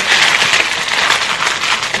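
Clear plastic packaging crinkling as it is handled, a steady rustling noise.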